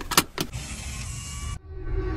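A car seat belt being fastened: a few sharp clicks as the metal tongue is pushed into the buckle and latches. They are followed by a steady hiss of about a second that cuts off suddenly.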